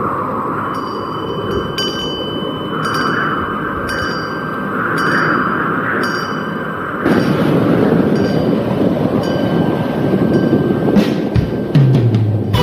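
Light ringing chimes struck in a steady pattern, about one every two-thirds of a second, over a steady rushing noise that grows louder about halfway through.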